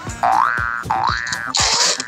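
Two cartoon-style comedy sound effects, each a quick rising glide that then holds its pitch, followed near the end by a short hiss.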